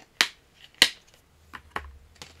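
Two sharp clicks about half a second apart, then a few fainter ticks near the end, from a steelbook Blu-ray case being handled.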